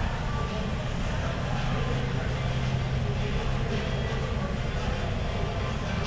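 Steady background din of a large indoor hall, with a low hum and faint distant voices.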